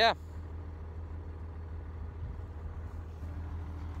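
Tractor engine running at a steady speed, a low even drone that cuts off suddenly at the end.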